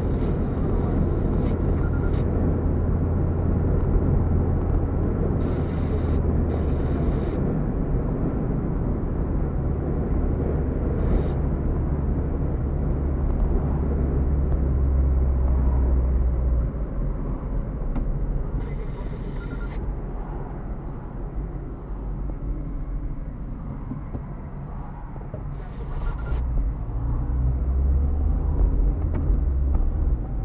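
A car driving, heard from inside the cabin: a steady low rumble of engine and road noise. It eases off for a stretch from about halfway through, then builds again near the end.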